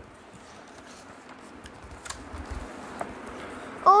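Faint rustle and a few light clicks of a paper storybook being handled and lifted, with a soft low bump about two seconds in.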